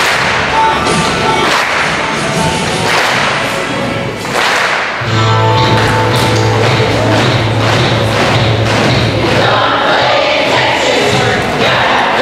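Children's choir singing with instrumental music and a thump about every second and a half. A low held bass note comes in about halfway through.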